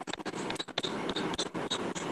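A stylus writing on a tablet's glass screen, heard as a quick run of taps and scratches while characters are written.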